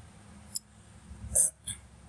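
A few brief clicks and a short hiccup-like vocal catch from the narrator between phrases. The vocal catch is the loudest, about midway through.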